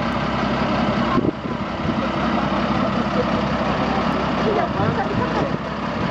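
Vehicle engine idling steadily with a low, even hum.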